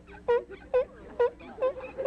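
Short, pitched squeaks, about five of them at roughly two a second: a cloth being rubbed across the camera lens glass to wipe it clean.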